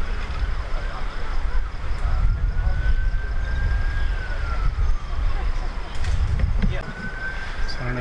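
A siren wailing in the background: one slow rise and fall in pitch, then a second rise near the end, over a steady low rumble.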